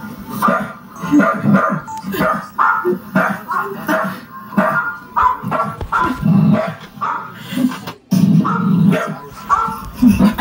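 A dog barking over and over, several short barks a second, with music playing behind.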